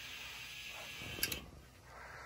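Low, steady room noise with a single small click about a second in from a Hydrolevel VXT-24 automatic water feeder's control box as its push button is pressed to feed the steam boiler. The feeder is not passing water, which the technician puts down to a clog.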